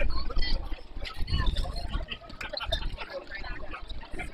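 Indistinct, overlapping chatter and calls from spectators and players around a youth baseball field, no words clear, over a fluctuating low rumble.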